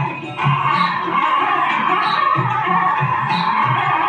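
Karaoke music: the backing track of a golden-era Indian film song with a steady beat, a man singing along into a handheld microphone.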